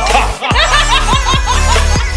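Electronic intro music with a heavy, steady beat, with a man and a woman laughing hard over it in a quick run of short ha-ha bursts about half a second in.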